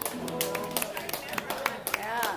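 Scattered hand claps and sharp taps at irregular intervals, over voices and a held electric guitar note that rings out early on and fades.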